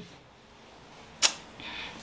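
A single sharp click about a second and a quarter in, followed by a brief faint hiss, in an otherwise quiet pause.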